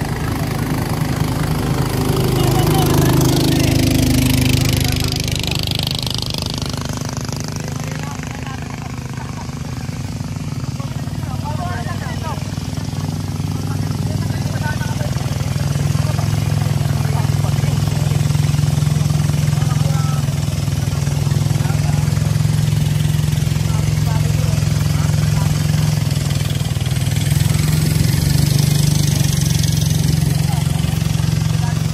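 Motorboat engine running steadily, louder from about halfway through. Near the start another motorboat passes close by, its engine note falling as it goes, with a hiss of spray.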